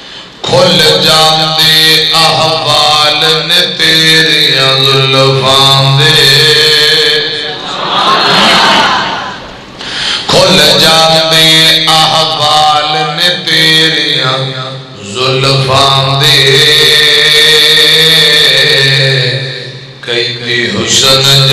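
A man's voice chanting in long, melodic, held phrases over a microphone, typical of the sung recitation a qari gives within a sermon, with short breaths between phrases and a brief break about nine seconds in.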